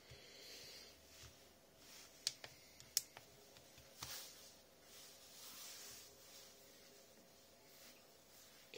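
Faint handling noises from a plastic automatic soap dispenser being turned and pressed in the hands, with a few short sharp clicks about two, three and four seconds in.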